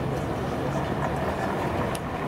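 Steady city street background noise, a low rumble of traffic with no distinct events.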